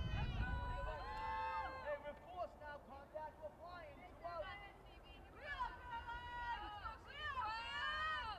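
Girls' softball players chanting and cheering from the dugout in high voices, with several drawn-out calls.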